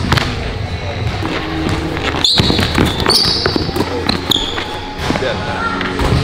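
Basketball bouncing on a hardwood gym floor during one-on-one play, with sneakers squeaking several times in the middle and voices in the hall.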